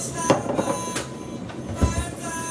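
Sharp knocks, a third of a second and a second in, and a heavier low thump near the end as things are handled on a kitchen counter. Under them runs a steady background of several held tones.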